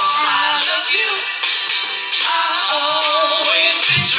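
A girl singing into a microphone over a backing music track, holding long notes.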